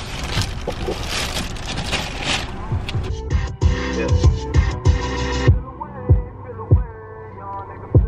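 Steady rushing of a car heater's blower fan. About three seconds in it cuts to background music with a regular thumping bass beat.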